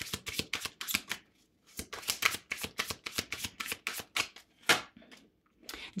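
Tarot cards being shuffled by hand: a fast run of flicking, slapping clicks. There is a short break a little after the first second and a quieter stretch near the end.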